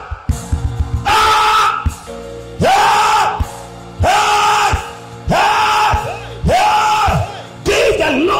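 A man's voice through a microphone and PA giving five long, loud cries, each held on one steady pitch for under a second and repeated about every second and a half, over music with a low beat.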